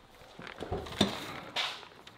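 Handling noise from a cardboard carrier of paper fountain-drink cups being jostled: a few light knocks around the first second, then a brief rustle.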